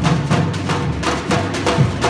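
Live percussion ensemble of shoulder-slung bass drums and other drums playing a steady groove: sharp strokes about four a second over a deep drum beat that comes round about once a second.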